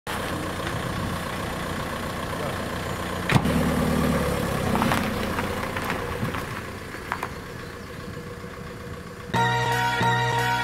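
A car engine idling steadily, with a sharp thump about a third of the way in, like a car door being shut, and a few lighter knocks after it. Music starts just before the end.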